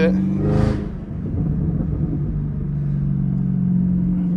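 Supercharged 6.2-litre V8 of a Chevrolet Camaro ZL1 1LE, heard from inside the cabin with the windows cracked, running at low cruising speed. Its steady drone dips about a second in, then rises slowly as the car gathers speed.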